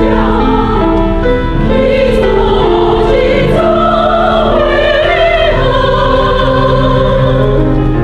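Mixed choir of men's and women's voices singing in parts, with long held chords and vibrato in the upper voices.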